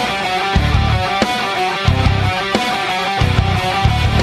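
Live rock band playing an instrumental passage: electric guitars over bass notes that come in repeated pulses and a few drum hits.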